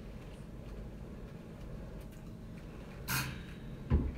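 Low steady room noise, then near the end a short rustle and a brief, loud low thump as a studio microphone on its boom arm is grabbed and moved.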